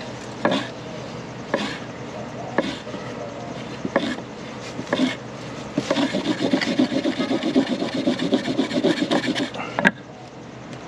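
Wooden block rubbing on a wooden board as it rolls a cotton-tinder strip back and forth: a Rudiger roll, the friction heating the cotton toward an ember. A few slow strokes about a second apart give way about six seconds in to fast rubbing, several strokes a second, ending in a sharp knock.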